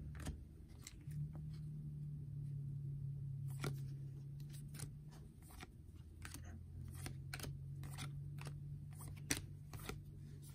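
Stiff trading cards being flicked through by hand, making faint scattered clicks and snaps as cards are slid off the front of the stack, over a low steady hum.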